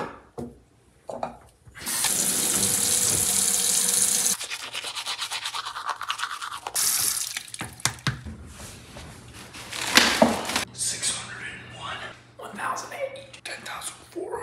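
A light switch clicks, then a bathroom tap runs into the sink for a couple of seconds. After that comes the steady scrubbing of a toothbrush.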